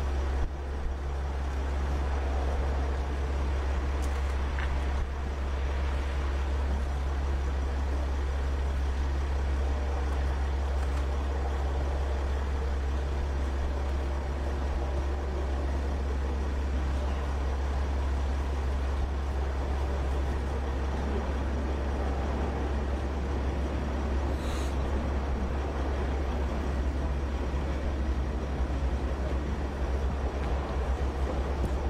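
Steady low rumble of a vehicle engine idling close by, without letting up.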